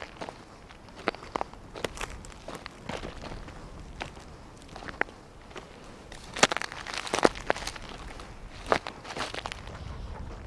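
Irregular crunching footsteps on dry, gritty ground, with the loudest, heaviest steps a little past the middle.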